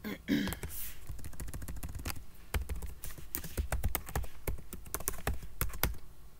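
Typing on a computer keyboard: a quick, uneven run of keystrokes, with a few louder key taps among them.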